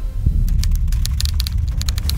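Typing sound effect: rapid, irregular key clicks, about ten a second, starting about half a second in, over a steady deep rumble.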